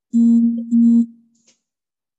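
A loud electronic tone at one steady low pitch, sounding twice in quick succession (about half a second each, with a brief dip between), then cutting off about a second in.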